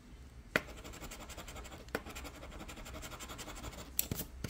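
Coin scraping the silver scratch-off coating from a lottery ticket, in rapid back-and-forth strokes that start about half a second in. A sharp tap sounds as the coin strikes the card, and another comes near two seconds in.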